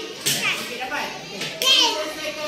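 Young children's voices talking and calling out, loudest briefly just after the start and again near the end.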